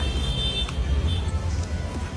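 Background music over a steady low rumble, with a single faint click partway through.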